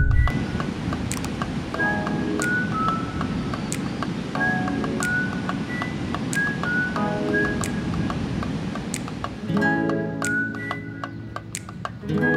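Background music: a short melodic phrase repeating about every two and a half seconds over a steady low rushing noise, which drops away near the end.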